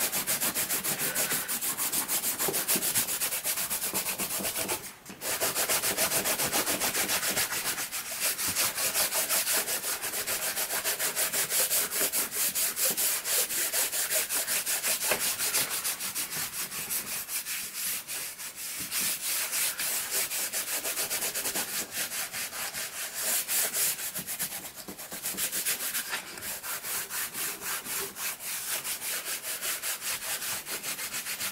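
Hands rubbing quickly back and forth over watercolour paper, lifting off dried masking fluid: a steady, rhythmic dry rubbing with a short break about five seconds in.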